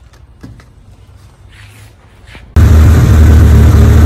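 A few faint clicks, then about two and a half seconds in a sudden cut to the loud, steady idle of a stroked 2.2-litre Tomei SR20DET four-cylinder turbo engine, running at about 1,100 rpm.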